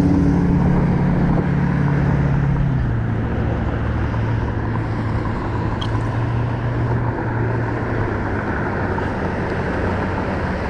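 Steady noise of road traffic heard from a moving bicycle, with a motor vehicle's low engine hum that fades out about three seconds in.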